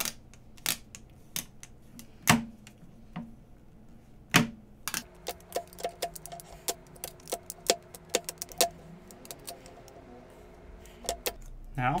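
Dust removal sticker dabbed and lifted on a smartphone's glass screen, giving sharp taps and clicks. They come a few at a time at first, then several a second in the second half over a faint steady hum.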